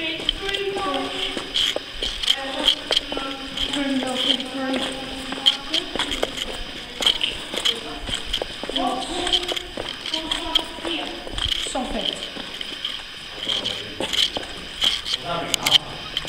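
Indistinct voices talking in a stone railway tunnel, over footsteps on the rubble-strewn floor and scattered clicks.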